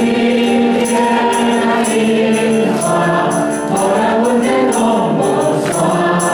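A small group of men and women singing a Taiwanese Hokkien praise song together into microphones, over instrumental accompaniment with a jingling percussion on the beat.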